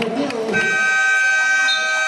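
Basketball game-clock buzzer sounding the end of the first half: one long, steady electronic tone starting about half a second in and held to the end.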